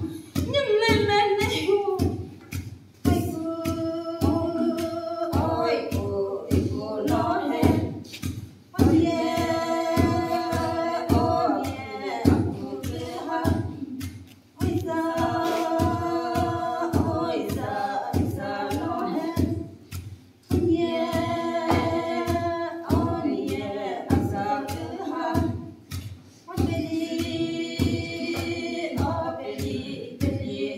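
Voices singing a Sumi Naga folk song unaccompanied, in phrases of about six seconds with short breaks. Under the singing runs a steady beat of thuds from long wooden pestles pounding into a wooden mortar.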